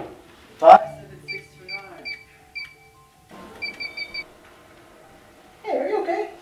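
Electronic keypad door lock beeping as a code is punched in: four short beeps about a second apart, then a pause and four quicker beeps. One loud knock on the door comes just before the beeps.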